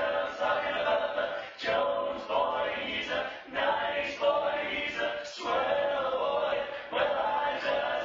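Male barbershop quartet singing a cappella in four-part harmony, in phrases broken by short breaths every second or two.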